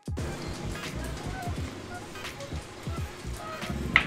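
Bicycle floor pump being worked to inflate a tubeless Maxxis Ardent Race tire. Near the end comes one short pop as the tire bead snaps onto the rim, the sign that the bead is seating.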